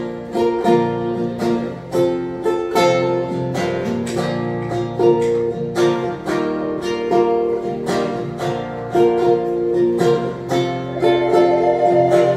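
Acoustic guitar strummed in a steady country rhythm through an instrumental break. Near the end a Native American flute comes in over the guitar with a long held note.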